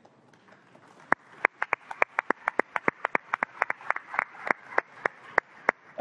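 Sparse audience applause: a few people clapping, single sharp claps at about four a second, starting about a second in and stopping just before the end.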